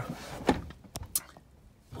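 A few brief handling knocks and clicks: one sharper knock about half a second in, then two lighter clicks around a second in, with quiet between them.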